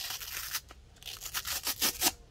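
A 125 mm P120 hook-and-loop sanding disc being peeled off the Erbauer ERO400 random orbital sander's backing pad: a rasping rip at the start, then a run of short rasps near the end as the grip lets go.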